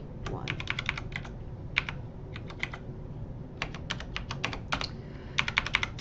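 Computer keyboard keys tapped in quick runs of several keystrokes, four or five bursts with short pauses between them.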